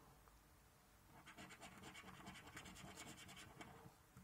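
A coin scraping the silver coating off a paper scratchcard in a quick run of short, faint back-and-forth strokes. The strokes start about a second in and stop just before the end.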